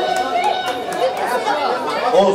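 Crowd chatter: many voices talking over one another in a large hall, with no music playing.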